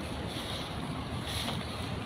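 Steady wind rushing and buffeting on the microphone outdoors.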